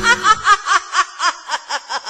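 A high-pitched cackling laugh: a rapid run of short 'ha' pulses, about four or five a second, growing gradually quieter. Background music cuts out about half a second in.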